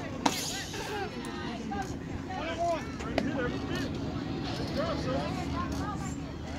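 A metal baseball bat hitting a pitched ball with a sharp, ringing crack about a quarter second in, followed by players and spectators shouting and cheering; another sharp knock comes about three seconds in.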